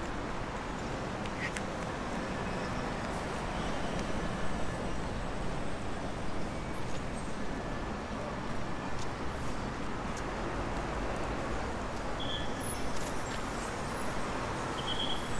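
Steady city road traffic: cars, buses and motorbikes passing on a multi-lane street, a continuous low rumble with slight swells as vehicles go by.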